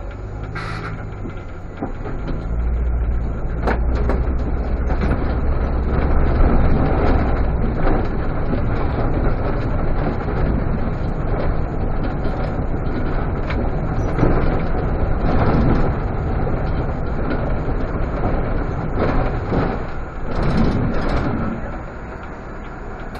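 Irisbus Citelis CNG city bus heard from inside the cab, pulling away and accelerating: engine and road noise rise about two seconds in and then run steadily at speed. A short hiss of air comes just under a second in.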